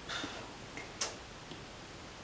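Apple Pencil tip tapping the iPad Pro's glass screen: one sharp tap about a second in, with a few fainter ticks around it, as menu items are selected in Procreate.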